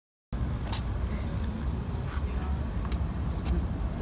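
Total silence for about a third of a second at a cut. Then steady outdoor background noise: a low rumble with a few faint clicks.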